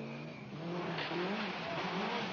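Rally car engine revving hard as the car passes at speed, its pitch climbing and dropping several times.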